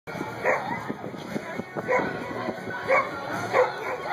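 A dog barking, four barks about a second apart, over the chatter of a crowd.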